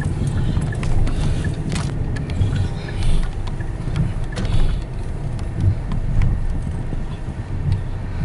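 Car interior noise while driving slowly: a steady low rumble of engine and tyres, with a few faint clicks and rattles.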